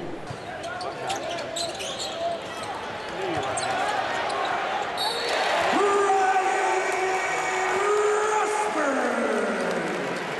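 Basketball game in a big arena: a ball bouncing and sharp clicks of play on the court. From about halfway the crowd cheers louder, with long held shouts, one falling in pitch near the end.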